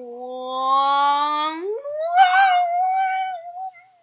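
One long, drawn-out voice-like note: it starts low and rises slowly, leaps sharply higher about halfway through, then holds with a slight waver before stopping just before the end.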